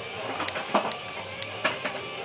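A handful of light clicks and taps, about five spread over two seconds, over faint room noise.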